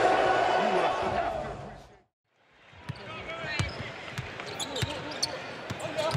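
Game audio fades out about two seconds in, and after a short silent gap a basketball is heard dribbling on a hardwood court: a run of quick bounces over a quiet arena background.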